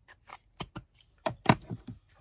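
Hands working with craft supplies on a cutting mat: a glue stick being capped and set down, then a muslin strip being picked up. The result is a quick, uneven run of small clicks and taps, the sharpest about one and a half seconds in.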